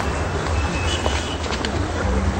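City street traffic ambience: a steady rumble and hiss of passing vehicles, with a short high beep about a second in.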